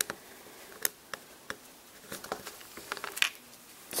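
Faint, scattered small clicks and taps of LEGO plastic pieces being handled as sword accessories are clipped onto a minifigure's back.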